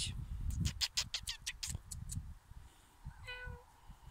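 A small white kitten gives one short meow near the end. Earlier there is a quick run of sharp rustling clicks.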